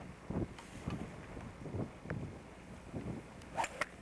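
Wind buffeting a camcorder microphone in irregular low gusts, with two sharp clicks close together near the end.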